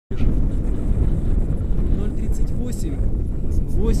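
Wind buffeting the microphone, a steady loud low rumble, with a few brief snatches of a man's voice near the end.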